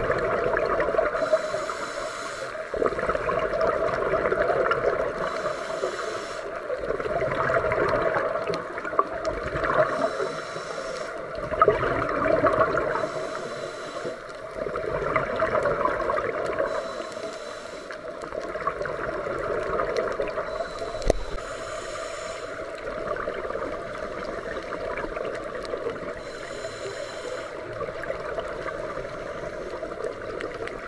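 Scuba diver breathing through a regulator underwater: a short hiss of inhalation comes about every four to five seconds, and between the hisses exhaled bubbles gurgle and rumble.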